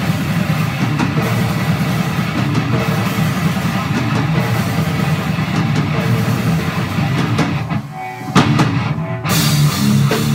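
Drum kit and electric guitar playing brutal death metal together in a loud, dense jam. The playing thins out briefly about eight seconds in, then the full band crashes back in just after nine seconds.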